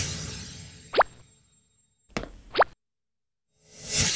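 Cartoon scene-transition sound effects. A whoosh fades out, then two quick upward-sweeping bloops come about a second and a half apart. After a brief silence, another whoosh swells up near the end.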